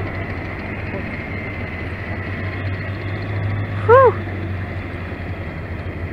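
M1A1 Abrams tank's gas turbine engine running steadily: a low hum with a faint high whine that fades out over the first few seconds. A short shout rises and falls in pitch about four seconds in, louder than the engine.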